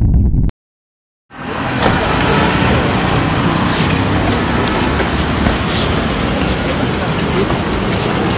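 Intro music stops about half a second in; after a brief silence, loud steady street noise with road traffic fades in and runs on.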